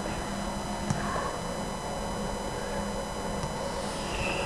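Steady background hiss with a faint, even electrical whine from the recording setup, and a small click about a second in.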